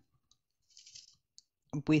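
Faint, scattered clicks of a diamond-painting drill pen picking up drills and pressing them onto the canvas: a few separate ticks, with a small cluster of soft clicks about a second in.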